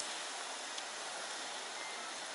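Steady, even hiss of room tone in a large hall, with no speech and no distinct events.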